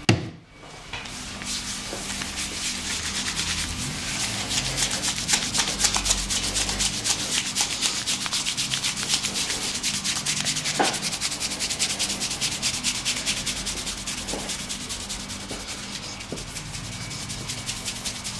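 Hands rubbing shaving foam over a bald scalp, close to the microphone: a fast, even rubbing that starts about a second in and keeps going.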